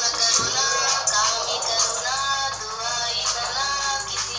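Hindi pop song playing: a woman's sung melody over a steady backing track.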